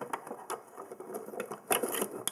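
A small purple plastic lip-gloss holder clicking and knocking against a makeup carrying case as it is pushed into its compartment. A run of light taps, with a louder cluster near the end.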